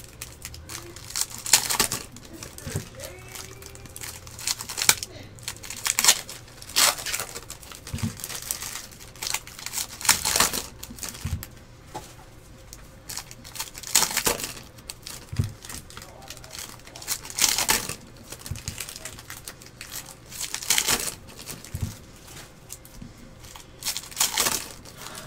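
Foil wrappers of Panini Prizm basketball card packs being crinkled and torn open, and the cards inside handled, in irregular crackling bursts every second or two.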